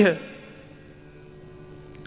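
A man's voice finishes a word at the start. A steady low electrical mains hum from the microphone and amplification chain then fills the pause.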